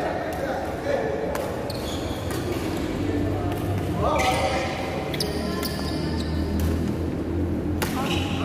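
Badminton rackets striking a shuttlecock in a rally, sharp cracks about once a second with the loudest near the end, echoing in a large hall.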